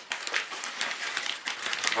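Flour bag rustling and crinkling as flour is taken from it by hand: a quick run of small crackles and clicks.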